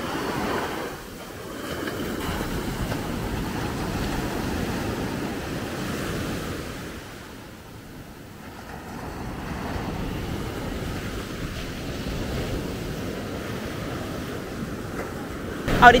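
Small waves breaking and washing up onto a sandy beach, the rush of surf swelling and ebbing in slow surges, dropping away about a second in and again around the middle.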